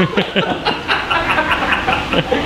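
Several men laughing, with scattered snatches of voices.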